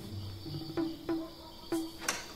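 Crickets chirping steadily in the night, with about four sharp clicking notes, each followed by a brief low ringing tone.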